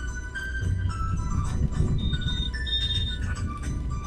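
Music: a melody of held high notes stepping up and down, over a steady low rumble.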